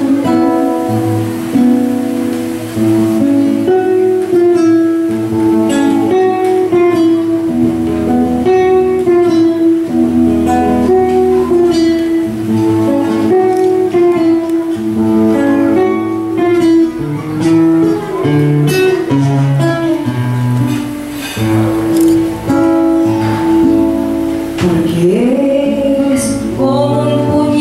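Live Cuyo folk music: acoustic guitar playing a run of plucked notes, with a woman's singing voice at times and coming back in near the end.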